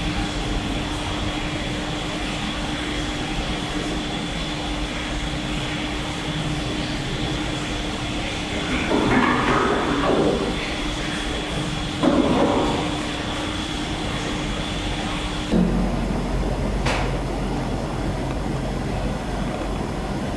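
Steady background hiss with a low hum, broken by two louder muffled noises about nine and twelve seconds in, then a single sharp knock near the end; the source of the noises is unexplained.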